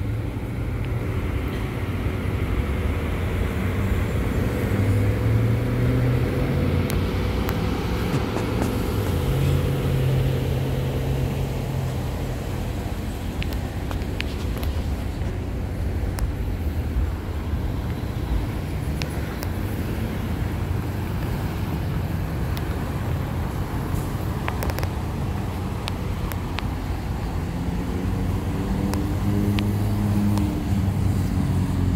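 Steady low engine rumble and road traffic passing, with an engine note rising near the end.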